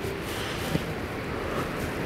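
Steady background noise of a large indoor show hall, with one faint click about three quarters of a second in.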